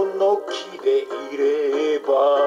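A man singing a Japanese kayōkyoku ballad in Japanese over a karaoke backing track, ending the phrase on a held, wavering note.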